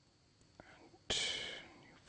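A short breathy vocal sound close to the microphone, a whisper or sharp exhale, coming on suddenly about a second in and fading within half a second, after a faint click.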